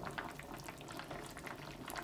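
A pot of lagman broth with potatoes and vegetables simmering: faint, steady bubbling with many small pops.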